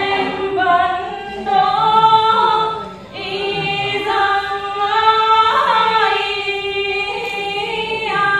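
Unaccompanied quan họ folk singing by women's voices: long held notes that slide slowly between pitches with melismatic ornaments, with a short break for breath about three seconds in.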